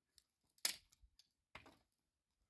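Dry dead branches being handled and dragged over stony ground: two short crackling scrapes about a second apart, the first louder, with a few faint twig ticks.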